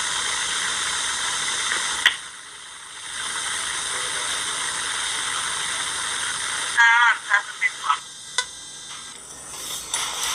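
Steady hiss, broken off for about a second near the start. Near the end, short high wavering sounds and a few clicks.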